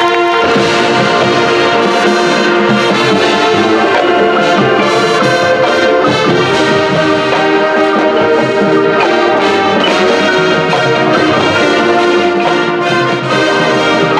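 High school marching band playing, led by its brass section in loud, sustained held chords.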